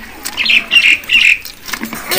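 A bird squawking three times in quick succession, loud and harsh, over about a second.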